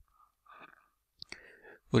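Faint breaths and soft, whispery mouth sounds from a man narrating, in a pause between his words. Speech resumes at the very end.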